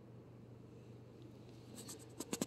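Near silence: room tone with a faint steady low hum, and a few faint clicks near the end.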